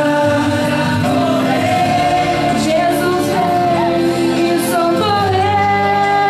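Church choir of men and women singing a hymn together from song sheets, a woman singing into a microphone in front. The notes are long and held, with wavering vibrato.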